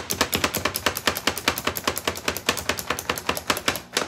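Plunger-type food chopper (Pampered Chef Food Chopper) pumped rapidly by hand, its spring-loaded blades clacking down through an onion several times a second in an even rhythm, stopping suddenly near the end.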